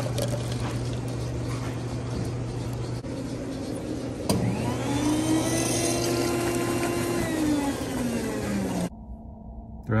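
Self-serve convenience-store coffee dispensers pouring into a paper cup. A steady low hum with the rush of the pour comes first. About four seconds in there is a click, and a machine whine rises in pitch, holds steady, then winds down near the end.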